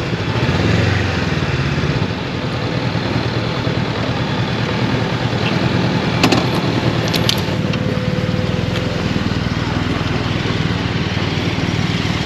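Motorcycle engine idling and running at low speed, a steady low sound, with a few short sharp clicks about six and seven seconds in.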